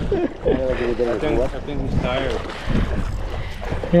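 Voices talking over a low steady rumble of wind on the microphone.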